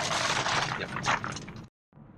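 Rain hitting the windscreen and roof and tyres hissing on the wet road, heard inside the car cabin as a steady hiss with scattered crackles. It cuts off suddenly near the end.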